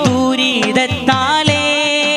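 Male voice singing a Malayalam devotional mashup song, melismatic lines over a held steady tone, with percussion keeping a steady beat beneath.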